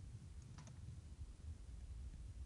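A couple of faint clicks a little after the start, over a low steady room rumble: a stylus touching a tablet screen.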